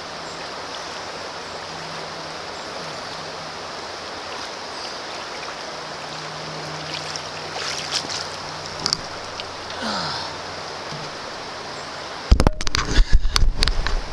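River water flowing steadily, with a few small splashes in the middle. About twelve seconds in, loud rumbling knocks take over as the camera is handled close to its microphone.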